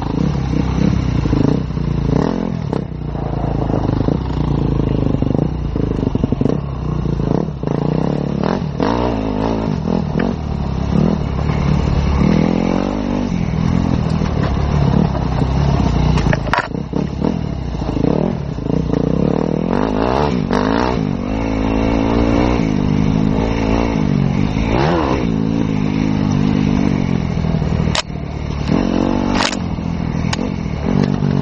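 Enduro dirt bike engine revving up and down continuously as the bike rides a rough gravel trail, with frequent knocks and clatter from the bumpy track.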